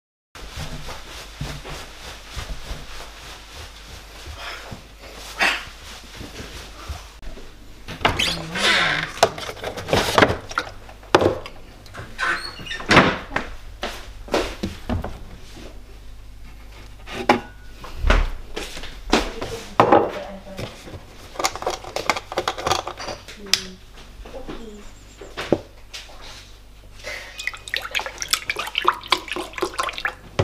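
Kitchen clatter: scattered knocks and clinks, with brief faint voices. Near the end, juice pours from a carton into a glass.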